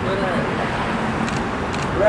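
Steady outdoor background noise with faint voices of a small group, and a few short sharp clicks about a second and a half in.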